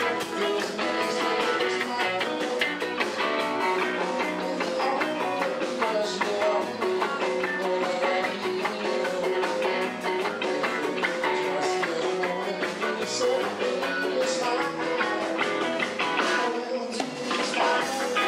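Live band playing rock and roll dance music, led by electric guitar over a steady beat.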